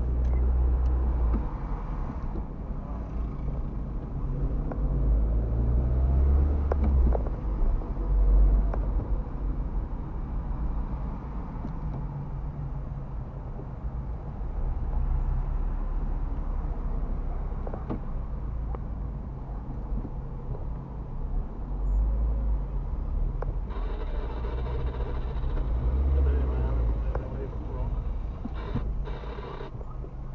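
Car engine and road rumble heard inside the cabin while driving in city traffic and slowing to a stop in a queue, a steady low rumble that swells and eases as the car moves.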